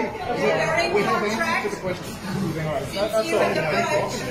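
People talking, several voices overlapping so that no single speaker stands out.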